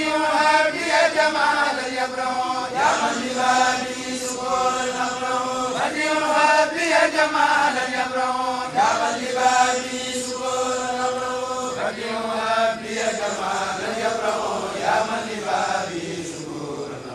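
A group of men chanting an Arabic religious poem together in unison through microphones, in the Mouride khassida style. The chant moves in long held phrases with sliding pitch that break every few seconds.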